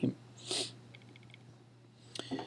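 A short breath from the speaker about half a second in, then a faint run of quick ticks, over a low steady hum.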